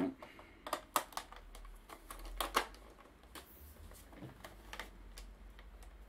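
Scattered sharp clicks and light knocks at irregular intervals, with no notes played, as a small keyboard and its cables are handled and connected.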